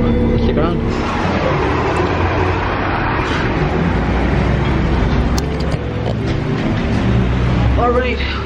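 Steady low rumble of road vehicles and traffic, with indistinct voices in the background.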